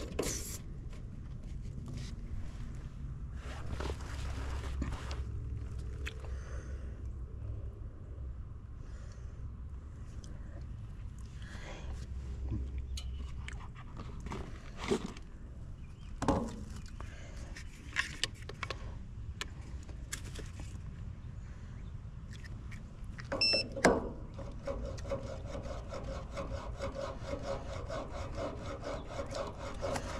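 Refrigerant hose fittings and probes being handled on an air-conditioner condenser's service valves: scattered clicks, knocks and rubbing over a low rumble, with a louder clatter near the end.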